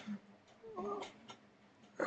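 Faint clicks of a computer mouse, with a short, faint, wavering voice-like sound a little past the middle.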